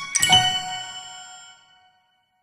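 Final struck note of the cartoon's backing music on bright, bell-like chimes, struck about a quarter second in and ringing out, fading away to silence.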